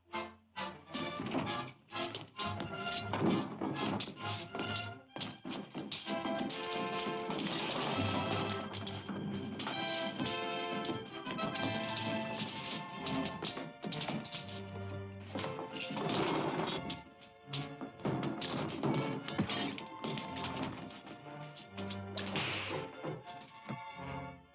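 A brawl's sound effects, a rapid run of blows and crashes, densest in the first few seconds. Under and around them runs an orchestral film score.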